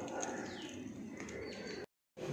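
Faint bird calls, with a few high chirps and one short falling whistle, over a quiet background hiss. The sound drops out abruptly near the end.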